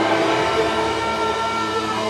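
Live band's sustained drone of electric guitars and keyboard: a thick, steady wall of held tones, with a low rumble coming in about half a second in.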